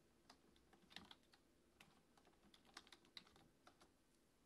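Computer keyboard typing: faint, irregular key clicks.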